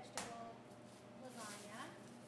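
A glass baking dish set down on a stainless-steel counter: one sharp clack just after the start.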